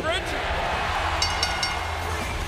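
Wrestling arena crowd noise. About a second in, the ring bell is rung several times in quick succession, signalling the end of the match.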